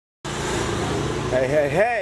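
A brief silence, then steady outdoor background noise cuts in abruptly, with a man's voice starting about a second and a half in.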